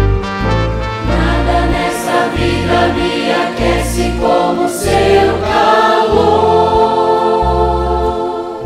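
Music: a youth choir singing a Portuguese-language gospel hymn over instrumental backing with held bass notes; the voices come in about a second in.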